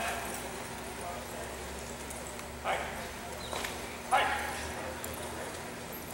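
Indoor cutting-arena ambience over a steady hum, with two short, loud calls about two and a half and four seconds in.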